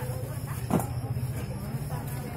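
Market ambience: indistinct talk from vendors and shoppers over a steady low hum. A brief louder sound comes a little under a second in.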